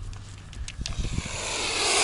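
Mute swan hissing: a breathy hiss that sets in about a second in and grows steadily louder. It is the swan's threat hiss, given with its wings raised in display.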